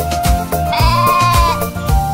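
Children's song backing music with a steady beat. About a second in, a cartoon sheep's bleat, a wavering "baa" lasting under a second, sounds over the music.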